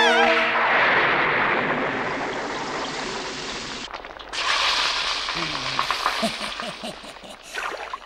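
A cauldron of oil boiling as a cartoon sound effect: a hissing rush that slowly fades, then after a brief break, bubbling with low gurgling pops. A girl's scream breaks off right at the start.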